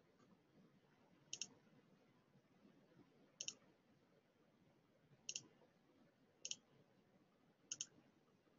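Computer mouse button clicking five times, each a quick double click, spaced one to two seconds apart over near-silent room tone.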